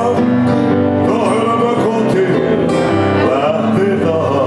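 Live band music: a male voice singing over a keyboard and a strummed acoustic guitar.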